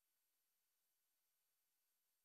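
Near silence: only a faint, steady digital hiss.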